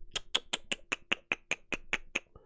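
Rapid, even clicking on a computer: about a dozen sharp clicks, some five a second, as keys or a mouse button are tapped over and over.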